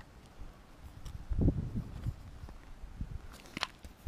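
Handling noise from a binder of plastic-sleeved trading card pages being held and turned. There are dull low thumps about a second and a half in, scattered small knocks, and a sharp click near the end.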